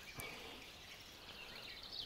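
Quiet woodland-river ambience with faint, distant bird twittering and one soft click just after the start.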